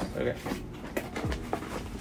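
A small printed cardboard mug box being opened and handled by hand: a sharp tap at the very start, then a few faint clicks and rustles of the packaging.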